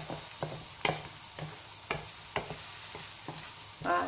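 Chopped onions sizzling in melted ghee in a clay tagine while they are stirred, with a steady frying hiss and several sharp taps and scrapes of the spoon against the clay.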